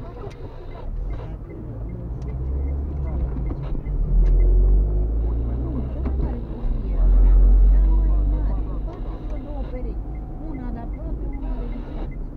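Low rumble of a car driving, heard from inside its cabin, swelling louder twice, about four seconds in and again near the middle, under faint muffled voices.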